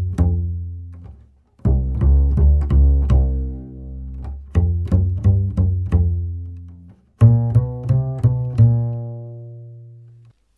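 Double bass, a 1960 Otto Rubner strung with Gut-a-Like SwingKing gut-substitute strings, played pizzicato in short phrases of plucked notes that ring and decay, with brief pauses between phrases. The last note is left to ring out slowly.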